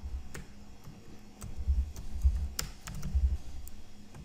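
Typing on a computer keyboard: irregular keystroke clicks, with a few dull low thuds in the middle.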